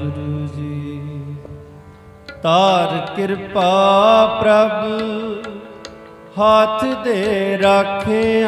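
Sikh Gurbani kirtan: harmoniums holding sustained notes, then about two and a half seconds in a voice starts singing over them. The singing eases off briefly before six seconds and comes back in strongly near the end.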